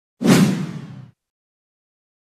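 Logo-sting whoosh sound effect with a hit: it starts suddenly and dies away within about a second.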